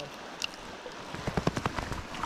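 River current flowing steadily, with a quick run of irregular water splashes in the second half.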